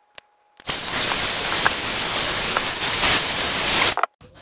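DrillPro cordless electric air blower running in a burst of about three seconds: a loud rushing hiss with a thin, wavering high motor whine, blowing dust off an opened battery pack's circuit board. It starts about half a second in and cuts off suddenly near the end.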